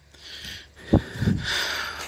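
Dry, flattened corn stalks and leaves rustling as they are pushed aside by hand, with a sharp click about a second in and a brief low rush just after.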